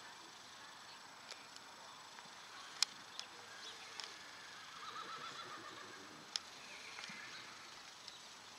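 A horse whinnying, one short wavering call about five seconds in, with a few sharp clicks scattered through, the loudest nearly three seconds in.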